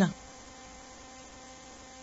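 A pause in speech: faint steady background hiss with a light electrical hum from the recording, after the tail end of a spoken word at the very start.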